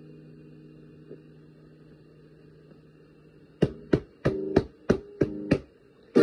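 Acoustic guitar in a pause of the song: a held chord dies slowly away. About three and a half seconds in, seven short, sharp strums follow, about a third of a second apart, leading back into full strumming.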